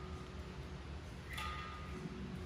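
Steady low room hum, with one faint metallic clink and short ring about one and a half seconds in, from a resistance band's anchor hardware on a steel gym rack as the band is pulled.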